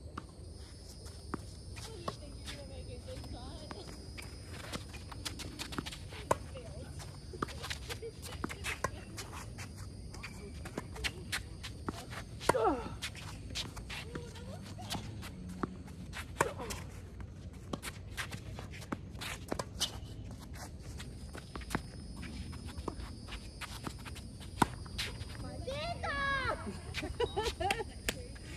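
A tennis point on an outdoor hard court: racket strikes on the ball, ball bounces and scuffing footsteps, with a few sharp hits standing out. A faint, steady high-pitched whine sits in the background for much of it, and a voice calls out near the end.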